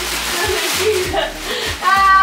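Metallic foil gift wrap crinkling and tearing as it is ripped open, over background music with a steady beat; a voice cries out near the end.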